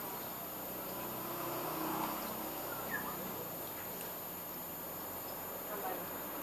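Paper wasps buzzing faintly at their comb, a steady low hum that swells about two seconds in, with one short sharp sound near the middle.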